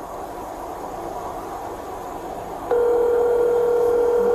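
Low background hiss, then a steady electronic tone that comes on about two-thirds of the way through and holds.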